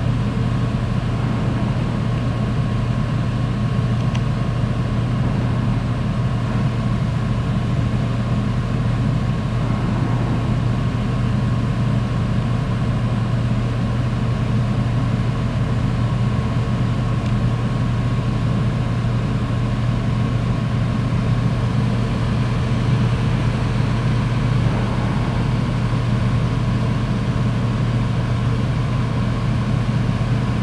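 Steady, unchanging drone of a ship's engines and machinery heard on deck: a deep hum with a faint higher tone held above it.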